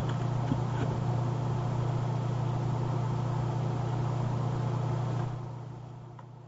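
A steady low hum under an even hiss, dropping away about five seconds in.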